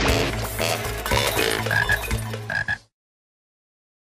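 A pitched, pulsing sound effect from a slideshow, cut off abruptly just under three seconds in and followed by dead silence.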